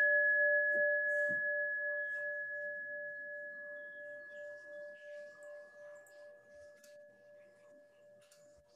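A struck bell ringing out with two steady tones, the lower one pulsing slowly, fading gradually until it has nearly died away near the end.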